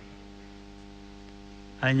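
A low, steady hum made of several even, level tones, with no change in pitch or loudness. A man's voice starts again near the end.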